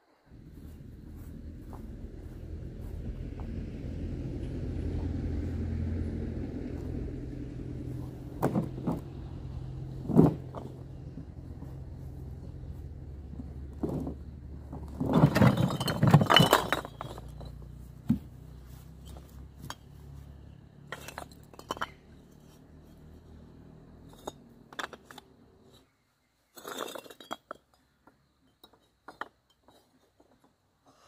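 Hollow fired-clay bricks tipped out of a plastic basket onto a pile, clattering and clinking against each other in a burst about halfway through, over a steady low hum that stops near the end. Scattered single clinks and knocks follow as bricks are set on top of one another.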